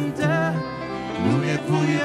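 Live band music: male and female singers singing into microphones over bass guitar and keyboard, the voices wavering with vibrato.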